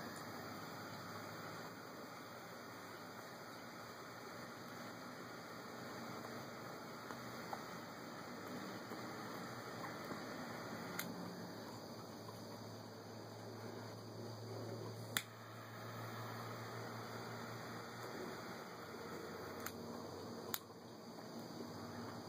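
Faint steady hiss with a few sharp clicks, the loudest about fifteen seconds in, as a cigar is puffed and lit with a single-jet torch lighter.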